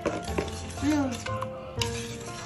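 A wire balloon whisk beating eggs and milk into cake batter in a plastic bowl, with light clicks of the wires against the bowl. Light background music plays over it.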